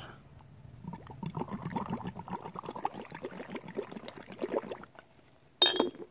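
Compost tea being aerated by blowing through a drinking straw: uneven bubbling in the liquid for about four seconds. A short, sharp knock or clink comes near the end.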